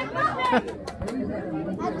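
Spectators talking among themselves: one voice close by in the first half second, then lower mixed chatter.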